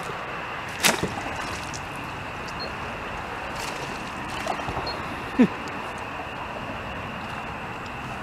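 A bowfishing bow shot: a sharp snap about a second in, over a steady hiss. About five seconds in there is a brief sound that falls in pitch.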